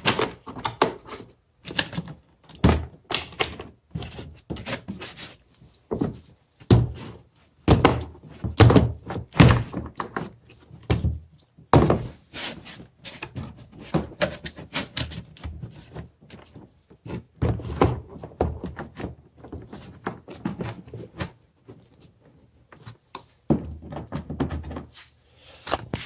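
Irregular thunks, knocks and scraping from a small 12 V lead-acid battery being handled and fitted into a plastic kayak hull through a deck hatch, with the rustle of its wiring.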